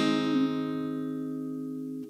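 A strummed chord on a Farida acoustic guitar ringing out and slowly fading after the song's last strums.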